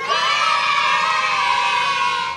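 A crowd cheering in one long shout that sags slightly in pitch and stops at about two seconds.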